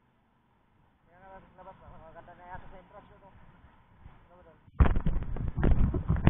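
Faint voices of people talking, then about five seconds in a sudden loud burst of rumbling, thumping handling noise on the camera's microphone as the camera is moved.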